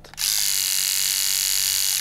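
Philips Shaver Series 5000 electric shaver running with its pop-up trimmer flipped open, a loud, steady, high buzz of the motor and trimmer blades. It starts just after the beginning and cuts off at the end.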